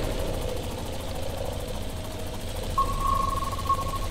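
Cartoon dune buggy's engine running with a low, steady rumble. About three seconds in, the buggy's electronic alarm starts a steady high tone, warning that a trap is approaching.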